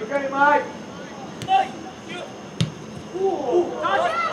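Players' voices shouting and calling out on a soccer pitch during play, with one sharp thud of a ball being kicked about two and a half seconds in.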